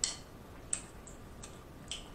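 A few short, sharp, wet clicks from eating seafood with sauce-covered fingers, about four spread over two seconds.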